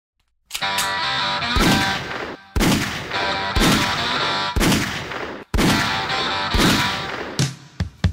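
Gunshot sound effects, a sharp bang roughly once a second, each ringing out, over a bed of music.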